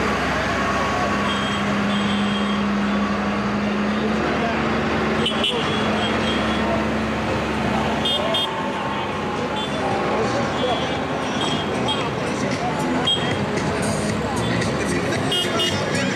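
Diesel engines of large Caterpillar wheel loaders running as they roll slowly past close by, with a steady low engine drone through the first half, over the chatter of a street crowd.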